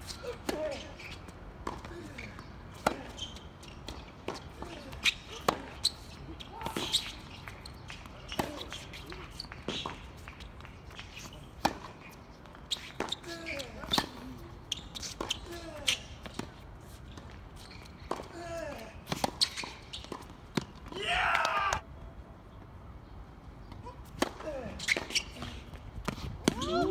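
Tennis rally: sharp racket strikes on the ball and ball bounces on the court, about one a second, with players' and onlookers' voices calling between shots and a longer burst of shouting about three quarters of the way through.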